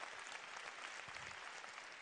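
Audience applauding: a steady, faint patter of many hands clapping.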